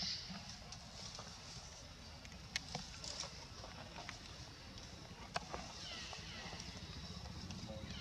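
Short high-pitched calls of infant macaques, each falling in pitch, at the very start and again about six seconds in. A few sharp snaps from the bamboo stalks they climb come in between.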